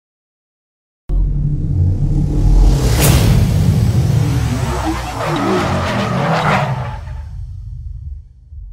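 Intro sound-effect sting: after a second of silence a deep rumble starts suddenly, a sharp whoosh sweeps through about three seconds in, and sweeping tones swirl before the whole thing fades out near the end.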